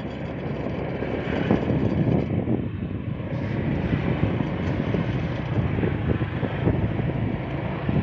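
Motorbike engine running while it is ridden slowly along a road, heard from on board as a steady noise.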